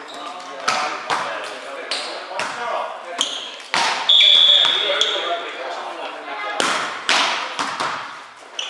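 Volleyball rally in a large echoing gym: several sharp slaps of the ball being hit, over players' voices. A high steady squeal lasts about a second, starting about four seconds in.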